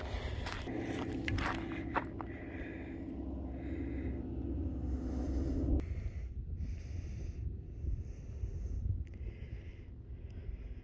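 A person breathing close to the phone's microphone, in soft puffs about a second apart, with footsteps on a gravel trail and a low rumble of wind on the microphone. A low steady hum runs underneath and stops about six seconds in.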